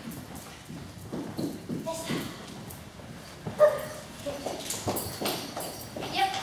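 Marker pen strokes and taps on a whiteboard as words are written in large letters, with short bits of voice in the room. The loudest moment is a sharp sound about halfway through.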